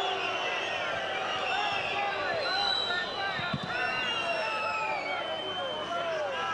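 Football stadium crowd noise: many spectators' high-pitched calls and whistles overlapping, rising and falling.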